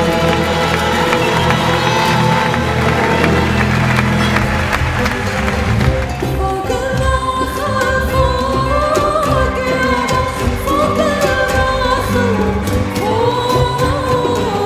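Live Arabic ensemble music with ouds and strings playing. About six seconds in, a woman's voice comes to the fore, singing an ornamented, bending melody over the instruments.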